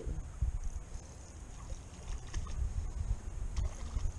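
Low, fluctuating wind rumble on the camera microphone, with faint scattered splashes and ticks from a hooked sunfish fighting at the water's surface.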